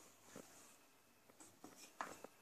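Faint scraping and light ticks of a spatula against a stainless steel mixing bowl as sponge-cake batter is stirred by hand.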